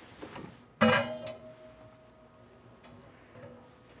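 A single sharp metallic strike about a second in, from a piece of metal kitchenware. It rings on with a few steady tones that fade away over about two and a half seconds.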